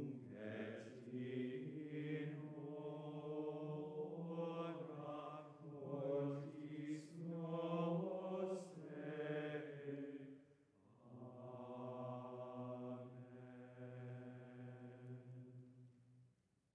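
Low voices chanting slowly in long sustained phrases, with a short break about eleven seconds in; the chant stops near the end.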